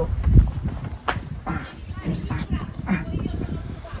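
A man grunting and straining with effort while working on a motorcycle, with a heavy low thump about half a second in and a sharp click about a second in.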